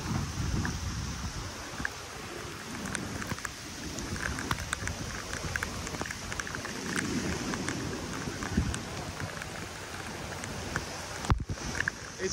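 Rain falling, with scattered drops ticking close by and wind rumbling on the microphone. One sharp knock near the end.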